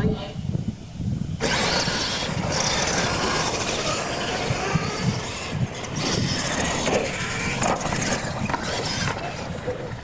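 Radio-controlled monster trucks racing on a dirt track, their motors whining with rising and falling pitch, starting suddenly about a second and a half in.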